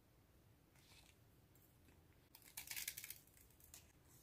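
Thin plastic sticker sheets being handled, with a short burst of crisp crinkling and rustling a little over two seconds in and a small rustle near the end.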